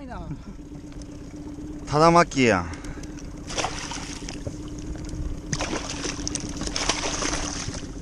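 Water splashing as a hooked red sea bream thrashes in a landing net at the surface, in bursts around the middle and latter half, over a steady low hum. A short vocal exclamation comes about two seconds in.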